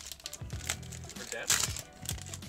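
Trading-card pack wrapper crinkling as it is handled and opened, with several sharp crackles about half a second and a second and a half in.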